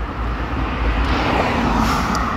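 A car driving past close by on the street, its tyre and engine noise swelling to a peak near the end, over a steady low rumble of traffic.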